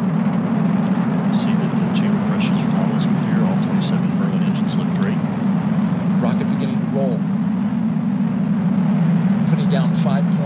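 Falcon Heavy rocket's 27 Merlin engines firing during ascent, a steady, loud, low rumble with no break.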